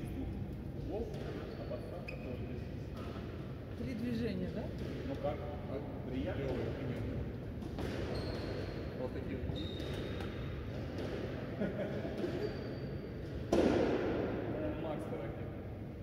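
Indistinct voices echoing in a large sports hall, with scattered thuds and a few brief high squeaks. A louder knock comes near the end.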